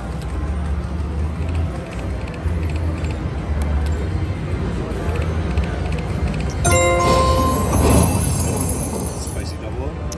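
Aristocrat video slot machine playing its game sounds over a low casino din. About two-thirds of the way in, a bright chime of several tones rings for about a second as a small line win pays.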